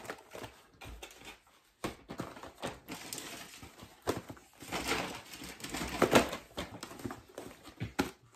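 Boxed rolls of wax paper and parchment paper being picked up and handled: a run of light knocks and rustles of cardboard and packaging, busiest in the middle.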